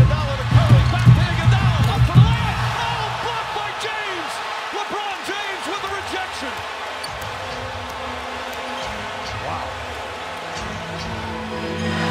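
Basketball game sound on a hardwood court: a ball bouncing and arena crowd noise, with heavy thuds in the first two seconds, then a busier, lower-level din with music underneath.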